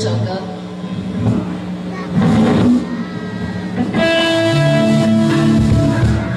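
Electric guitar and bass guitar playing loose held notes through the stage amplifiers, the bass stepping between low notes; a full chord is struck and rings on from about four seconds in.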